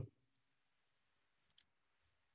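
Near silence: room tone with two or three faint clicks.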